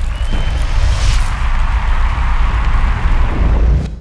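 A loud closing sound effect, likely an outro logo sting: a deep sustained rumble with a noisy wash above it, fading out right at the end.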